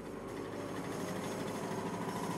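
The small 200 cc single-cylinder two-stroke engine of the Maikäfer prototype running steadily as the open car drives up, growing gradually louder.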